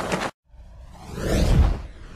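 A whoosh sound effect: a rushing sweep that swells to its loudest about a second and a half in, then fades away. A brief earlier noise cuts off abruptly just before it.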